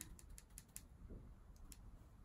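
Near silence with a few faint, light clicks, mostly in the first second and once more near the end: a makeup brush being worked in a plastic blush palette.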